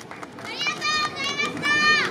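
High children's voices shouting out together in drawn-out, high-pitched calls from about half a second in, after a few scattered claps at the start.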